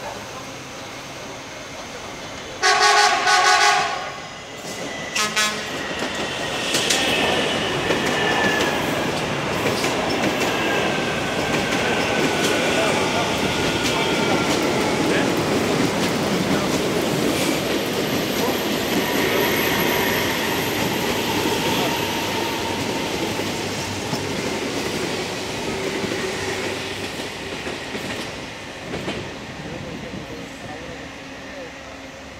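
An electric train's horn sounds once, about a second long, near the start. Then electric multiple-unit trains run through the station, one departing close by and one arriving: a steady rumble of wheels on rail with a falling whine, easing off near the end.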